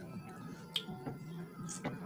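Sharp eating clicks from people eating by hand, two of them standing out, a little under a second in and near the end, over faint background music.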